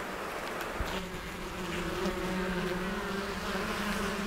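Honeybees buzzing at a hive entrance as foragers fly in and out. From about a second in, a bee close by gives a steady, even hum.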